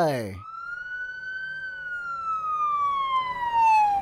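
Police siren sound effect: one slow wail that rises a little, then glides steadily down in pitch, growing louder toward the end.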